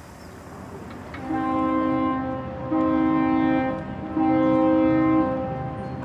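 Three long, steady, deep chord-like tones, each lasting about a second, begin about a second in. They sound over a fainter sustained tone that continues between them.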